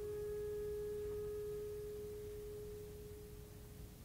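A woodwind in the orchestra holds one long, soft note that slowly fades away. It is the last note of a short phrase that climbs in steps.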